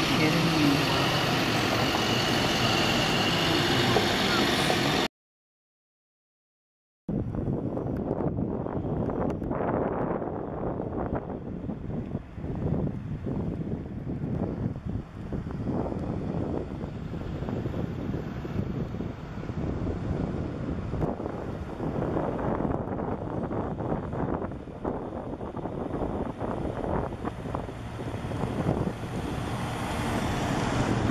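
Heavy trucks hauling a house on a trailer: a steady engine drone for about five seconds, then a two-second gap of total silence, then an uneven rumble of the trucks passing with wind buffeting the microphone.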